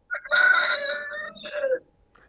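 A rooster crowing once, a single cock-a-doodle-doo that drops in pitch at its end.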